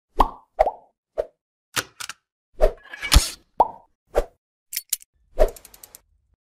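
Sound effects of an animated logo intro: a string of about ten short plops at uneven spacing, the loudest a little over three seconds in, ending in a quick run of faint ticks.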